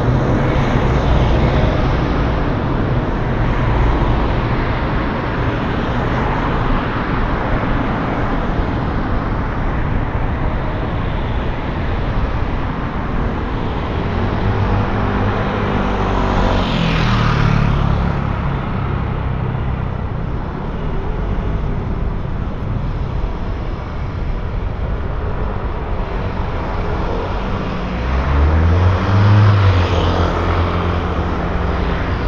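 Steady street traffic with cars passing. A motorbike passes with a rising and falling engine note about halfway through, and a motor scooter passes close near the end, the loudest sound.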